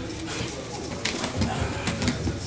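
Wrestlers grappling on gym mats: bare feet scuffing and bodies bumping, with low grunts and heavy breathing. A few sharp knocks come in the second half as a man is taken down to the mat.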